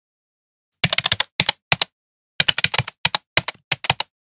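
Typing sound effect: rapid key clicks in short, uneven bursts, starting about a second in.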